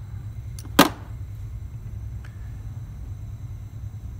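A single sharp metallic click a little under a second in as small pliers bend the tip of a wrought-wire denture clasp, with a fainter click just before it and a faint tick about two seconds in, over a steady low hum.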